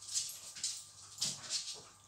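Faint sounds from a pet dog: a few short, breathy noises.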